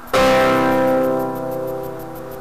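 Classical guitar: a full chord struck just after the start, left to ring and slowly fade.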